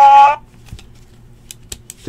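A high-pitched voice trails off in the first half-second, followed by a few faint, sharp clicks of hands handling things at a table.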